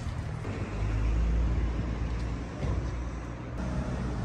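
Street traffic: a passing motor vehicle's low engine rumble swells about a second in and eases off past the middle, over general road noise.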